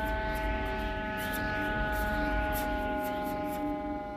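A sustained ambient drone of background score: several steady held tones over a low rumble, unchanging throughout.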